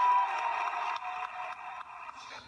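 Audience laughter and applause, heard thin and tinny through a laptop's speaker and re-recorded, fading away.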